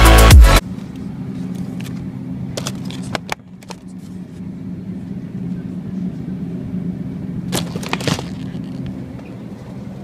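Electronic dance music cuts off about half a second in, leaving a steady low hum with a few brief knocks and rustles: a cluster a little after two seconds and another near eight seconds.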